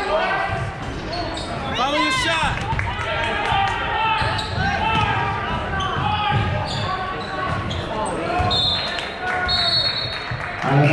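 Basketball being dribbled on a hardwood court during a game, with sharp squeaks from players' sneakers, strongest about two seconds in, over a steady mix of crowd voices and shouts.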